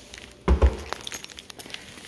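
Two quick thumps close together about half a second in, then a few faint light clicks: kitchen cabinet doors and the stove's drawer being handled.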